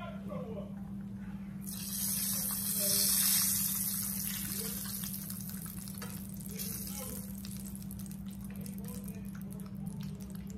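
Kitchen tap running for a few seconds. The rush of water starts suddenly about two seconds in, is loudest soon after and tapers off before the end, over a steady low hum.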